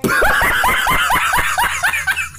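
A man laughing hard and loud in a fast run of short high-pitched bursts, about six a second, starting abruptly.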